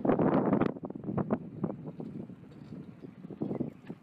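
Wind buffeting the camera microphone in irregular gusts, strongest about the first second and easing toward the end.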